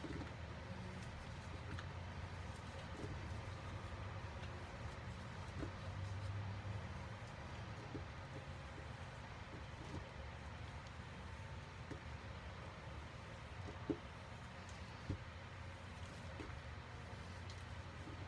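A knife blade scraping and cutting a soft, crumbly block of reformed powder over a bowl of loose powder: faint scratching with scattered small clicks, two sharper ones near the end, over a low steady rumble.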